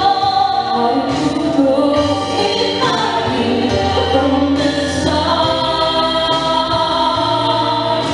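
Two women singing a slow ballad duet into microphones, voices sustained and blending in harmony, over an instrumental accompaniment with held bass notes.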